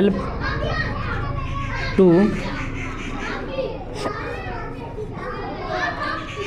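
Children's voices chattering and calling in the background throughout, while a man's voice dictates two single words, one at the start and one about two seconds in.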